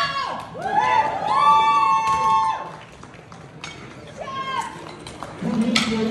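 People yelling during a heavy competition squat: two long, high-pitched shouts in the first two and a half seconds, then quieter, shorter cries around four seconds in.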